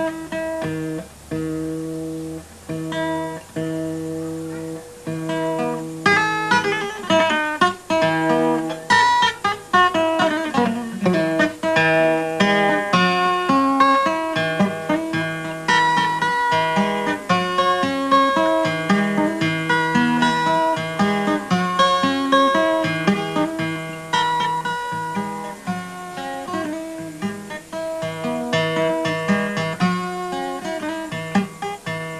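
Acoustic guitar fingerpicked in Malian kora style, imitating the kora with interlocking bass and melody lines. It opens with slower repeated low notes, then about six seconds in becomes a louder, dense run of fast picked melody.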